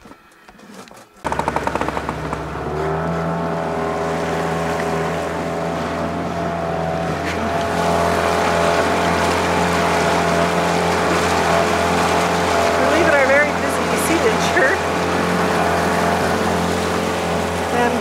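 Outboard motor on an inflatable dinghy running steadily under way, with the hiss of water along the hull. It cuts in suddenly about a second in.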